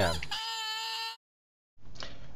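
Oboe reed crowing: one steady, reedy tone with a buzz of overtones, held just under a second and cut off sharply. The crow is a little low in pitch, a sign that the tip needs clipping a bit more to raise it.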